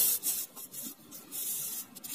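Fingers rubbing and sliding across a sheet of paper: soft brushing sounds, the first and loudest at the very start, then fainter ones about a second and a half in.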